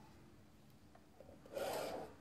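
A clear plastic set square slid across drawing paper on a drawing board: one short scraping rub near the end, lasting about half a second, against faint room tone.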